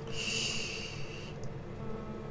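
A man's audible breath, a soft hiss lasting a little over a second and ending before the halfway point, over a faint steady room hum.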